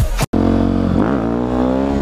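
Supermoto motorcycle engine running under way, following the sudden cut-off of music just at the start. The revs drop and climb again about a second in, then hold steady.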